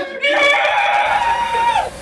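A voice holding one long, high note for over a second, which bends down and stops near the end.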